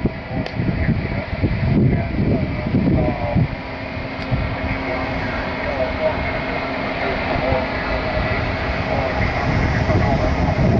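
Single-sideband voice audio from the FO-29 satellite downlink on a Yaesu FT-817ND: faint, garbled voices of other stations under hiss and rumble, with a steady low tone coming in about three and a half seconds in.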